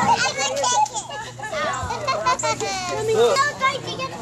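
Young children's high-pitched voices chattering, with no clear words.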